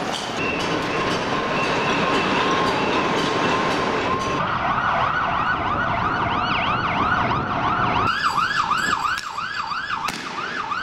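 A police vehicle siren starting about four seconds in, sweeping quickly up and down in pitch and speeding up to a faster yelp near the end. It sounds over a loud, steady rushing noise that falls away at about eight seconds.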